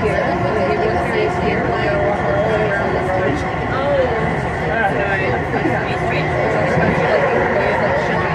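People's voices talking over the steady running noise of a moving vehicle, heard from inside.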